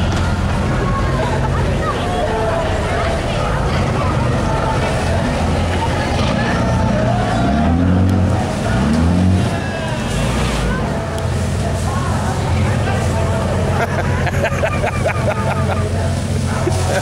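Boat engines running with a steady low hum while a crowd of voices chatters over them; about halfway through the engine note swells and sweeps up and down twice.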